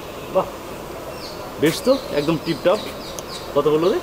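A man's voice speaking in short phrases through the second half, over a steady background hum.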